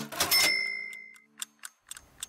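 The end of a TV programme's intro jingle: the music chord stops at once, a short bright ding rings and fades within about a second, and a clock-ticking sound effect ticks on, fading to a few faint ticks.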